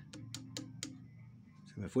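A few light metallic clicks as a steel tool touches and taps the feed dog and surrounding metal on the cylinder arm of a Singer 18-22 sewing machine while the feed dog is being set.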